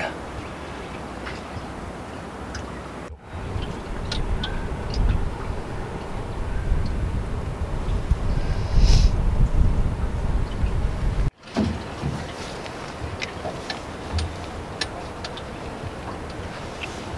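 Low, uneven outdoor rumble, heavier in the middle, with a few faint clicks of handling. It cuts off abruptly twice, about three seconds in and again about eleven seconds in.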